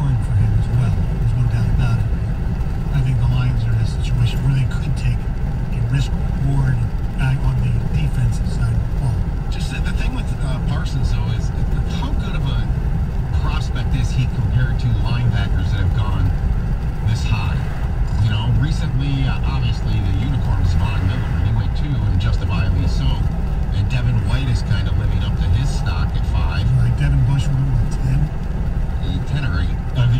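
Steady road and engine rumble of a car cruising at highway speed, heard from inside the cabin.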